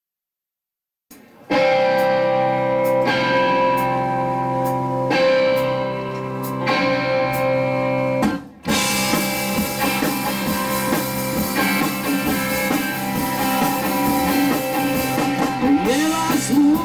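Live rock band: after about a second of silence, electric guitar chords ring out and change about every one and a half seconds over sparse cymbal taps. A little past halfway the sound drops out briefly, then the full band (guitars, bass and drums) comes in together.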